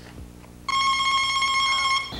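Game-show contestant buzzer sound effect: a steady electronic buzz that comes in about two-thirds of a second in and holds on one pitch for over a second before cutting off.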